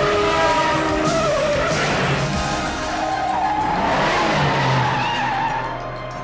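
A car driven hard with its tyres squealing, the pitch wavering and sliding, over soundtrack music; it eases off near the end.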